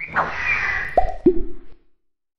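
Animated logo-intro sound effects: a falling whoosh, then two quick cartoon plops about a quarter-second apart, the second lower in pitch, fading out shortly after.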